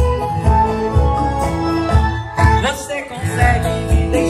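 Live band playing an upbeat country-style song intro, with a steady kick-drum beat about twice a second under keyboard and guitar.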